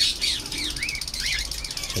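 A flock of caged cockatiels and other parrots chirping and calling over one another: a fast, high chatter throughout with several short rising-and-falling whistled calls.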